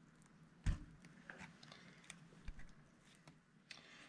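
Faint handling sounds of wire hardware cloth and pins being worked against a fish's fin: one sharp click a little under a second in, then a few faint ticks and light rustling.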